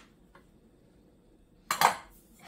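A short, sharp clink of a ceramic bowl against the countertop near the end, with a faint click earlier; otherwise only quiet room noise.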